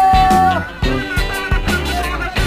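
Upbeat music with a steady drum beat and a bass line. A long held melody note ends a little before the middle.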